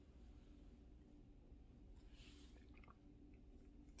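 Near silence: quiet room tone with a faint steady hum, and a faint sip from a small plastic cup about two seconds in.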